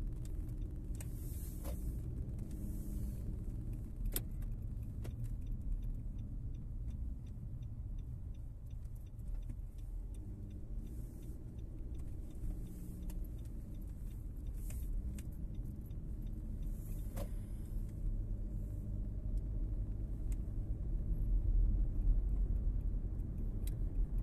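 Car interior driving noise: a steady low engine and road rumble heard from inside the cabin, with a few single faint clicks. It grows louder in the last few seconds.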